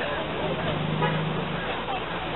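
Outdoor street background of traffic noise and faint distant voices, with a low steady tone lasting about a second in the middle.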